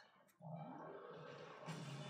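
Audio from the anime episode playing on screen: a low, steady, noisy sound that starts suddenly about half a second in.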